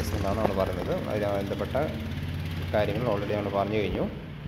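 A person speaking, over a steady low hum.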